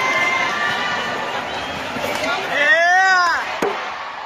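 Badminton arena crowd noise, with many spectators' voices. Near the end one high voice gives a loud, long shout that rises and falls, followed by one sharp knock.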